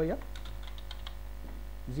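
Typing on a computer keyboard: about six quick keystrokes within the first second, then the keys stop.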